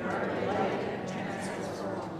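Congregation reading a response aloud in unison: many voices speaking together, blurred into one murmur with no single clear voice, trailing off near the end.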